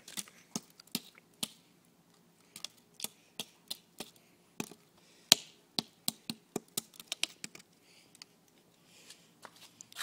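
Plastic pool skimmer basket being banged against the ground: an irregular run of sharp knocks and taps, the loudest about five seconds in.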